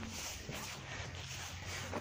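Faint steady background noise with a low hum and no distinct events.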